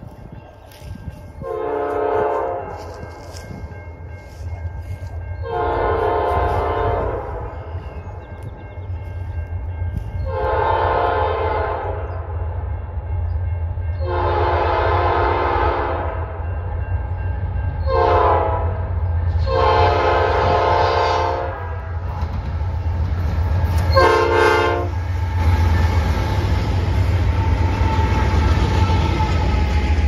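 A diesel freight train's multi-chime air horn sounds for a grade crossing: seven blasts over about 24 seconds, most about two seconds long and two much shorter, over a low engine rumble that grows as the train approaches. From about 25 seconds in, the train is passing close and the steady noise of its wheels on the rails takes over.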